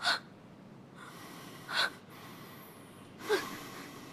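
A person gasping: two short, sharp breaths, one a little before two seconds in and one a little after three seconds in, against a faint steady hiss.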